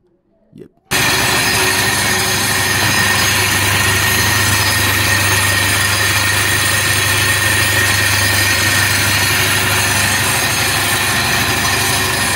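An EFL 2 mk3 mechanical sieve shaker running a stack of test sieves loaded with a gravelly soil sample: a loud, steady vibrating rattle over a constant low hum, starting about a second in. The machine is grading the soil by particle size in a sieve analysis.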